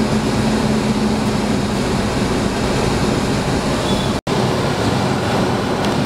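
Steady running noise of a car heard inside its cabin, with a low hum that fades about two seconds in. The sound cuts out for an instant about four seconds in.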